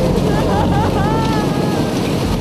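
Storm sound effect: a steady rush of rain-and-wind noise over a low rumble, with a few short gliding high tones in the middle.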